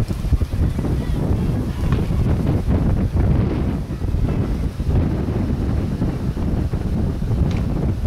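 Wind buffeting the camcorder's microphone: a loud, uneven low rumble with no speech over it.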